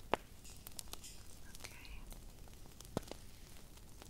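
A few sharp clicks and light taps of small props being handled close to the microphone. The loudest click comes just after the start and another near three seconds, with a soft whispered 'ok' between them.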